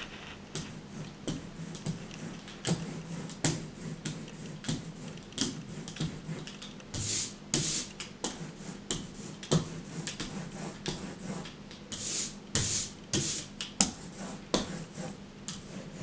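Hand ink brayer rolling back and forth over an inked linoleum block. Each stroke gives a brief hiss with many small ticks, and the strokes come at irregular intervals.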